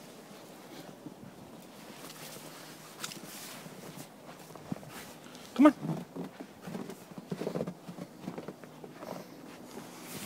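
Footsteps crunching in deep snow: a run of uneven steps in the second half. A voice calls "come on" about halfway through, which is the loudest sound.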